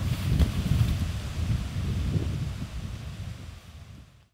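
Wind buffeting the microphone, a low rumble with a faint hiss above it, fading away steadily toward the end.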